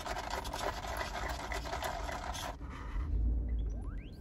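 Iced coffee drink being sipped through a plastic straw: a crackly slurping hiss lasting about two and a half seconds over a steady low rumble, with a short rising tone near the end.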